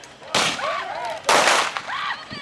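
Two gunshots, a little under a second apart, each with a short echo, from revolvers or rifles fired in a staged gunfight; voices shout between them.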